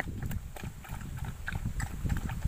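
Two dogs lapping and chewing from a bowl of buttermilk with rice and roti: an irregular run of small wet lapping and chewing clicks.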